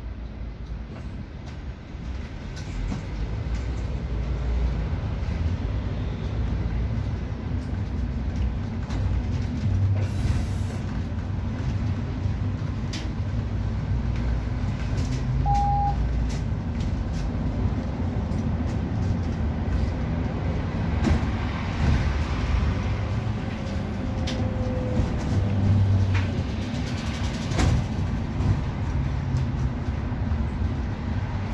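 Inside a city bus: the engine and drivetrain rumble low and steady, growing louder about two seconds in as the bus pulls away, with road noise and rattles of the interior. A short beep sounds about halfway through.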